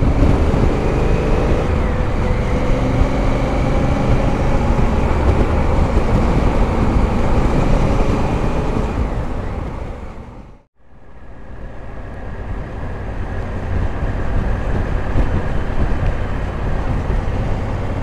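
Honda Africa Twin 1000's parallel-twin engine running at road speed, mixed with steady wind rush on the rider's camera; its pitch rises slightly in the first couple of seconds as the bike accelerates. About ten and a half seconds in, the sound fades briefly to silence and comes back.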